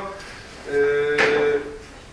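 A man's drawn-out hesitation sound "yy", held on one pitch for about a second, with a short knock in the middle of it.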